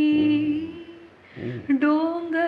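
A woman singing a Marathi poem unaccompanied. She holds one long note that fades out about a second in, and a new line begins just before the end.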